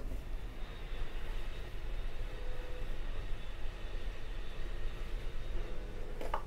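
Steady rumble and rushing noise of the Amtrak Southwest Chief passenger train in motion, heard from inside the car.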